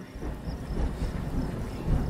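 Thunder sound effect: a low rolling rumble that swells toward the end.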